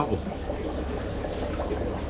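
Aquarium water running: a steady splash and trickle of water pouring into the tank from the rack's return outlets, with bubbling around a sponge filter.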